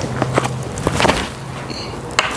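Footsteps and shoe scuffs of a backhand disc golf throw's run-up and follow-through on a tee pad and dry leaves: a few sharp taps over a rustling noise that fades toward the end.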